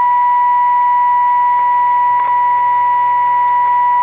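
Steady, high-pitched test tone from the RCA Model T62 tube radio's speaker: the audio modulation of a 455 kc signal generator passing through the radio's IF stages during alignment, with the trimmer just peaked. A faint low hum runs underneath.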